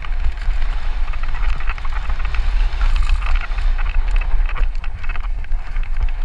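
Wind buffeting the camera microphone as a Santa Cruz Nomad mountain bike runs fast downhill, its tyres rolling over dry dirt and loose rock. The frame and drivetrain rattle and click over the bumps.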